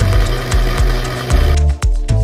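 Background music with a steady beat, over an electric blender running for about a second and a half before it cuts off.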